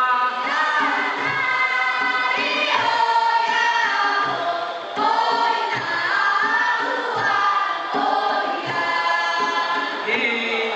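A group of voices singing a Puyuma folk song together as dance music, with faint low beats under the melody about every second and a half.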